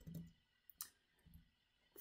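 Near silence with one faint computer-mouse click a little under a second in.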